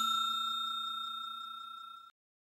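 Bell chime sound effect ringing out with a few steady tones and fading evenly, cut off suddenly at the end: the notification-bell sound of a subscribe animation.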